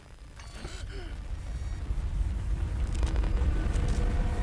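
A low rumble that swells steadily louder: a cartoon sound effect for a digital set rebuilding itself around the characters.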